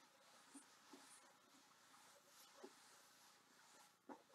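Very faint hands brushing and lightly tapping a djembe's head as a warm-up, with a few soft, irregular touches.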